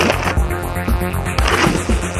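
Music with a steady beat over the scrape of a snowboard on a snow-crusted concrete wall and snow, in two short bursts: one at the start as the board meets the wall, another about a second and a half in as it comes back down to the snow.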